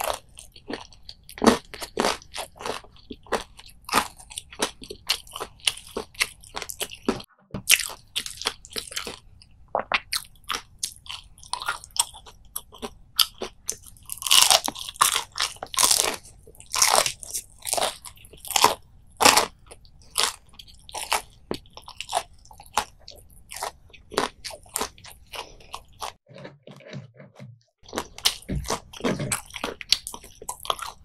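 Close-up chewing of crisp battered deep-fried anchovies, eaten whole with the bones: dense, irregular crunching, with louder bursts of crunching from fresh bites in the middle.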